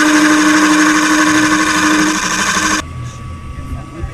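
Wood lathe spinning a small piece of wood while a hand-held gouge cuts it: a loud, steady cutting hiss with a steady low tone underneath. It cuts off suddenly about three seconds in.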